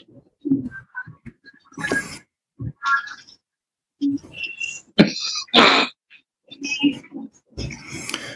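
Scattered short voice sounds, grunts and breathy exhalations, coming through the call's microphone between pauses, with a couple of sharp clicks about five seconds in.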